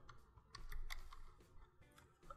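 Computer keyboard typing: a short run of quick keystrokes about half a second to a second in.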